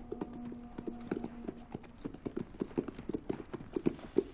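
Horses walking, their hooves clopping in an irregular beat that grows louder after about two seconds as they approach.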